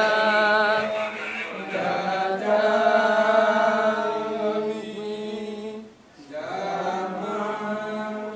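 Buddhist funeral chanting: voices holding long drawn-out notes over a steady low tone, with a short break about six seconds in.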